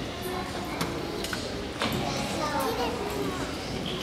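Many young children chattering at once in a large hall, mixed with adult murmur, with a couple of short knocks.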